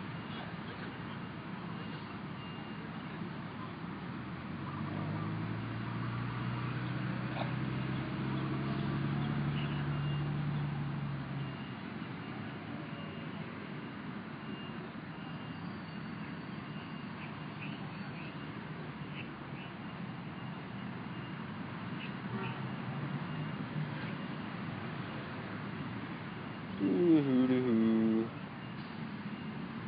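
Outdoor street background with a motor vehicle engine passing, louder for several seconds starting about four seconds in, and a faint high tone repeating about once a second. Near the end a short, loud call with a rising-then-falling pitch.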